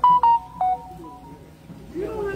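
An electronic chime: a quick run of pure beeps at several different pitches, a short melody that stops about a second in.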